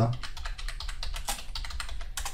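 Computer keyboard typing: a quick, steady run of keystrokes.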